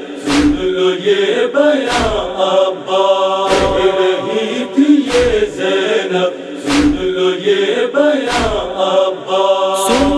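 Voices chanting a held, wordless drone between the verses of a noha, with a heavy beat about every one and a half seconds keeping the mourning rhythm.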